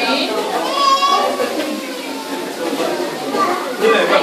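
A crowd of adults and small children chattering, with high-pitched children's voices calling out about a second in.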